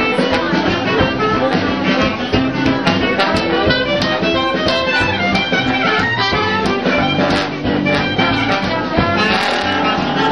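Traditional Dixieland jazz band playing live: trumpet and trombone leading over a rhythm section with a steady beat.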